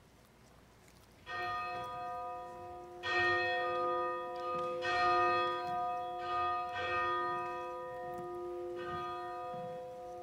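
A church bell struck five times, about two seconds apart, starting a little over a second in, each stroke ringing on into the next.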